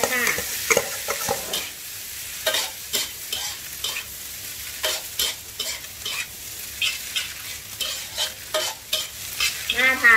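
Spatula scraping and tossing rice and diced vegetables in a hot wok, with a steady frying sizzle underneath. The scraping strokes come irregularly, about one or two a second.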